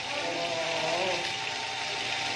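Quiet conversational voices over a steady background hiss.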